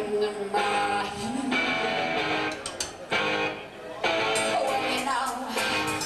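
Live band music with strummed electric guitar chords, played in phrases broken by short gaps, and a little singing.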